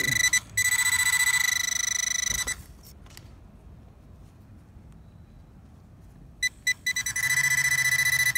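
Handheld metal-detecting pinpointer sounding a steady, high electronic tone as its tip sits over a metal target in the dirt. The tone cuts out about two and a half seconds in, a few short beeps come at around six and a half seconds, and the steady tone starts again just after.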